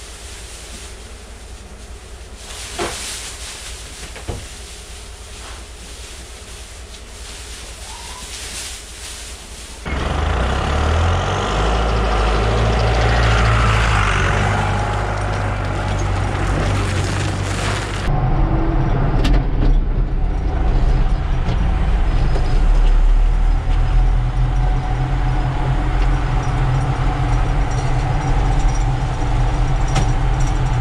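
A quieter steady hiss with two short knocks, then about ten seconds in a loud heavy tractor engine starts running close by. From about 18 s on, a John Deere tractor's diesel engine running under way, heard from inside the cab and louder still.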